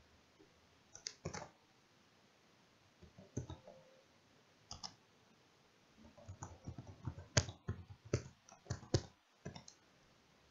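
Typing on a computer keyboard: a few scattered key clicks, then a quick run of keystrokes through the second half.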